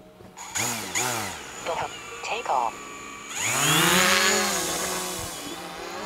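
DJI Mavic Pro quadcopter's propellers spinning up for a hand launch: a whirring whine that rises and falls twice briefly, then climbs loudly about three seconds in as the drone lifts off and slowly drops in pitch.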